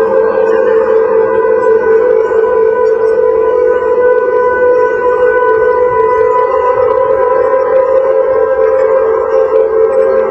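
Electronic drone music: a steady, dense drone of several held tones layered together, with no beat.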